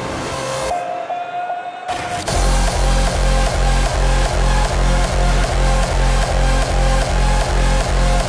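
Hardstyle DJ set. A held synth note plays with the bass dropped out, and a little over two seconds in the heavy kick drum comes back in a steady four-on-the-floor beat at about two kicks a second.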